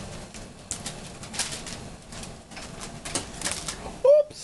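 Irregular rustling with light knocks and clicks, several spread through the few seconds, from a toddler moving about and handling a toy stick.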